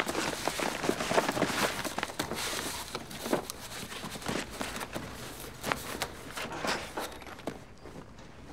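Pink cardboard bakery box full of donuts being crushed and crumpled by hand on a table: irregular crinkling and crackling of the cardboard with soft squashing thumps, thinning out toward the end.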